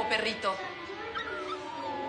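A dog whining in a run of high, gliding whimpers.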